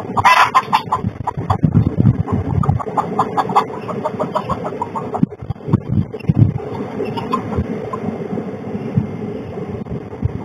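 Hen squawking in alarm at a fox close to the coop: one loud squawk at the start, then rapid runs of clucking that thin out after the first few seconds.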